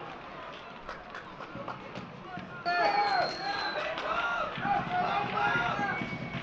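Low, steady football-ground ambience for the first half. Then loud shouts from voices around the pitch start abruptly and carry on to the end, with a brief high steady tone as they begin.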